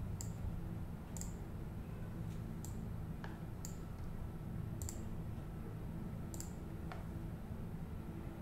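Computer mouse button clicking: about six sharp clicks, roughly a second apart, over a steady low hum.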